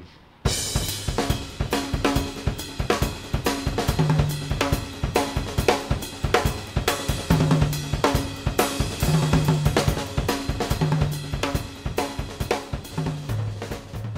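Music track driven by a drum kit with a bass line, starting suddenly about half a second in and keeping a steady, busy beat.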